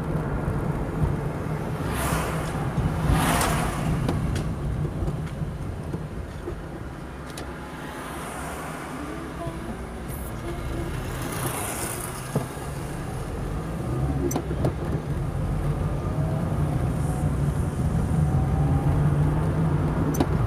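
Car engine and road noise heard from inside the cabin while driving: the sound drops as the car slows around a roundabout about halfway through, then grows again with a faint rising engine tone as it picks up speed. Two brief hissing swells come through, once early and once just past the middle.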